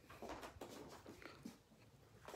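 Near silence: quiet room tone with a few faint, soft clicks and rustles.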